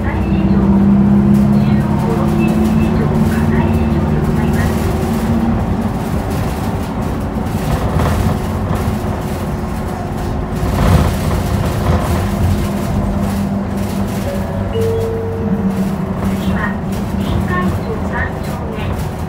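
Running sound inside an Isuzu Erga city bus (2DG-LV290N2) on the move: its diesel engine drones with steady low tones over road noise. The drone is strongest in the first few seconds, eases mid-way and picks up again in the second half.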